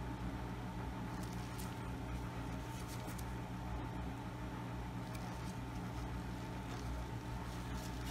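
Steady low electrical hum with a faint high tone held under it, and a few faint soft ticks from gloved hands handling a glass ornament and an ink bottle.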